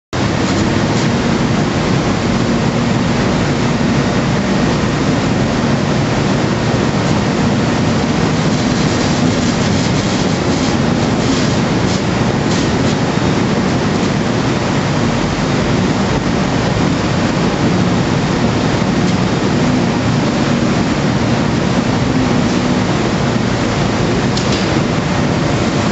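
Machinery inside the deck of the Silver Spade, a Bucyrus-Erie 1850-B stripping shovel, running: a loud, steady mechanical noise with a low hum underneath.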